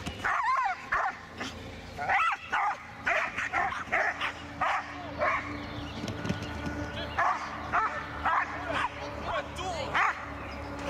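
A dog barking and yipping repeatedly in short high-pitched calls, in clusters of several at a time.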